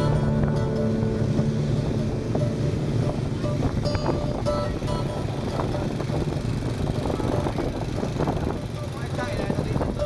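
Motorbike riding in dense scooter traffic: a steady low engine hum with wind on the microphone and a mix of street noise from the surrounding motorbikes. A guitar music track fades out over the first couple of seconds.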